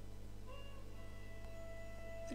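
Faint background music of sustained tones over a steady low hum, with a short note about half a second in.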